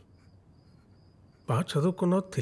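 Film soundtrack: faint, high, pulsing cricket chirping over a quiet background, then a man's voice starts speaking dialogue about one and a half seconds in.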